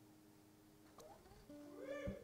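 The final chord of the song's piano and guitar accompaniment dying away into near silence. A faint click comes about halfway, then a short, faint held tone near the end.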